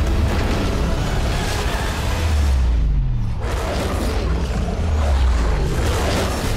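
Loud, dense trailer score with deep booms and falling bass sweeps. It thins out briefly just past the halfway point, then surges again.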